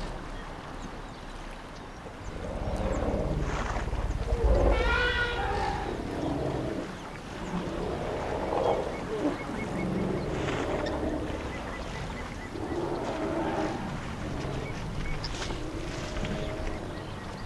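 African elephants trumpeting and squealing in a string of separate calls, the loudest about five seconds in, over a low rumble: the agitated calls of a herd around a calf stuck in the mud.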